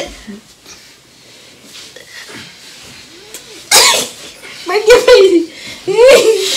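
A person's voice: after a quiet first half, a sudden explosive burst of breath from the mouth about two-thirds in, then a short strained vocal sound.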